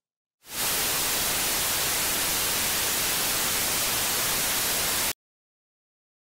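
Steady static hiss, like white noise, fading in quickly about half a second in and cutting off suddenly about five seconds in.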